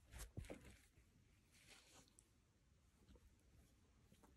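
Faint rustling of paper being handled, a few short rustles in the first second and a softer one about two seconds in, against near silence.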